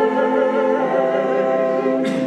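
Congregation singing a hymn in long held notes, accompanied by an electronic keyboard. The chord changes about three-quarters of a second in.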